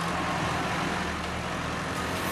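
Diesel engine of a backhoe loader running steadily, a low hum under a broad mechanical noise.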